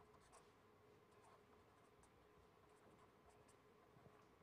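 Near silence with faint scratching of a felt-tip marker writing on paper, in short scattered strokes over a faint steady hum.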